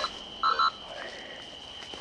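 Night insects droning steadily at one high pitch, with a short call about half a second in.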